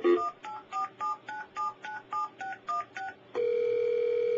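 Touch-tone (DTMF) telephone dialing: a quick run of short two-note beeps, about three or four a second, as the phone number 9797616 is dialed automatically. A little after three seconds in, the beeps stop and a steady ringback tone begins, the line ringing through to the called party.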